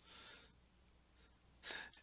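Near silence, with a short in-breath through the mouth near the end, just before speech resumes.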